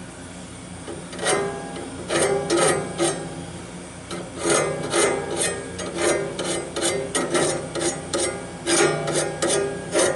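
A hand file rasping back and forth between the teeth of a steel sawmill band blade, scraping sap and dirt off the tooth faces to clean them for grinding. The quick strokes, about two or three a second, begin about a second in, with a short break near the middle.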